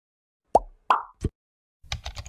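Three quick plop sound effects, each dropping in pitch, about a third of a second apart. Near the end comes a rapid run of keyboard-typing clicks as text is typed into an on-screen search bar.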